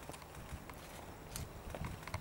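Light footsteps and a few scattered small clicks and soft thuds on stone and carpet, over faint outdoor background noise.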